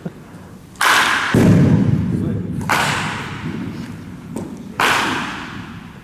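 Three sharp cracks of baseball bats striking balls, about two seconds apart, each echoing in a large indoor practice hall. A heavy thud follows the first crack.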